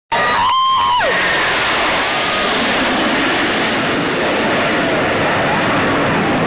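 Steady, loud roar of a formation of six F/A-18 Hornet jets flying past low. A person's high shout rings out at the start and falls away about a second in, with faint spectator voices under the jet noise.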